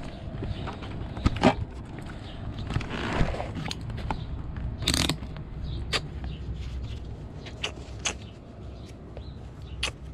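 Riding gloves being handled and pulled on: rustling fabric and scattered sharp clicks and scrapes, with a louder rustle about halfway through, over a low steady rumble.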